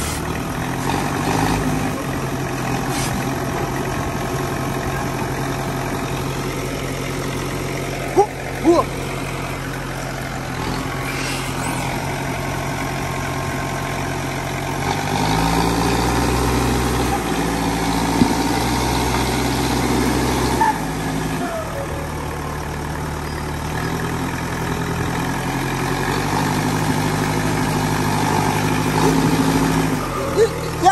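LiuGong backhoe loader's diesel engine running steadily. Its speed rises about fifteen seconds in and drops back about six seconds later. There are a couple of sharp knocks about eight seconds in.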